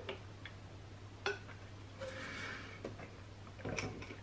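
Someone drinking from a plastic bottle: a few faint, scattered clicks of swallowing and mouth sounds, with a soft breath out about two seconds in.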